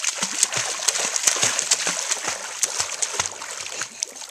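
A small child's feet kicking and splashing at the surface of lake water while swimming: a quick, irregular run of splashes that eases off near the end.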